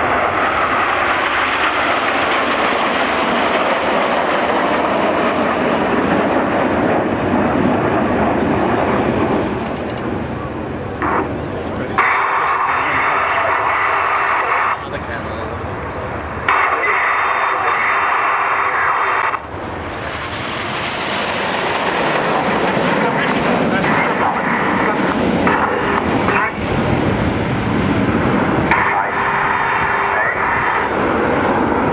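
Jet engines of a formation of nine BAE Hawk T1 trainers running as they fly past overhead. The noise swells and eases, with several abrupt jumps in level.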